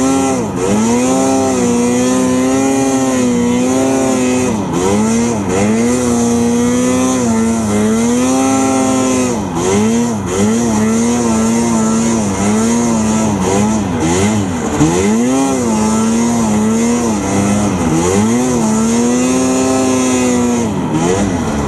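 Arctic Cat M6000 snowmobile's two-stroke engine running hard under load in deep snow. Its note holds steady, then repeatedly drops and swoops back up as the throttle is eased and opened.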